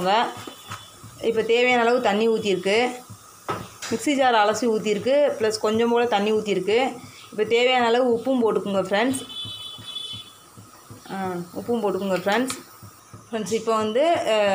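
Speech: a voice talking in several short phrases with brief pauses between them.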